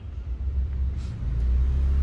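Low rumbling handling noise from a hand moving over the recording phone and its microphone, swelling about a second in, with a couple of faint taps.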